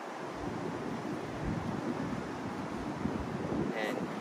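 Wind on the microphone: a steady noise with flickering low buffeting, and a short spoken word at the very end.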